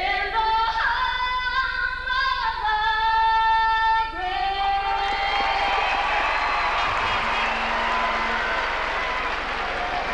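A woman singing long held notes for about four seconds, then the arena crowd cheering as the singing ends.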